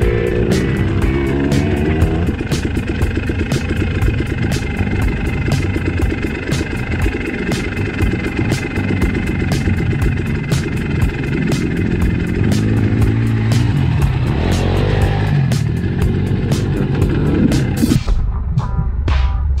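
A dirt bike engine running and revving up and down, under background music with a steady beat.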